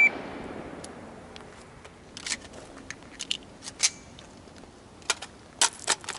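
The echo of a rifle shot fades away. Then come scattered sharp clicks and knocks of rifle and magazine handling, with a magazine dropped onto gravel, the loudest about four seconds in and near the end.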